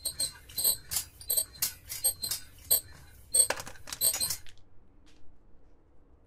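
Comic sound effect of short, high squeaks and clicks, two to three a second, that cuts off suddenly about four and a half seconds in.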